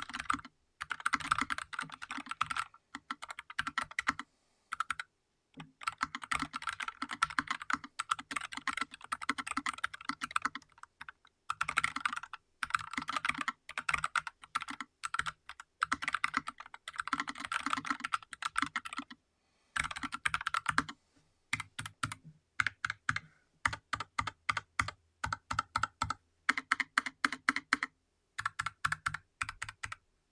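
NuPhy Air60 low-profile mechanical keyboard being typed on: runs of fast keystrokes broken by short pauses. In the last third they give way to slower, separate key presses.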